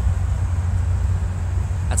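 Low, fluctuating rumble of wind buffeting a phone's microphone outdoors.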